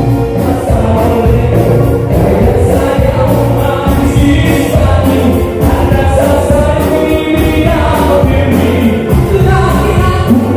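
Live band playing kuratsa dance music on electric guitars, bass, drum kit and congas, with singing.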